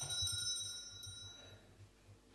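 A small metal bell struck once, ringing with several high, clear tones that fade away over about a second and a half.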